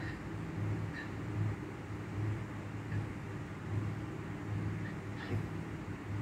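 A low, steady background hum that swells and fades slightly, over a faint hiss.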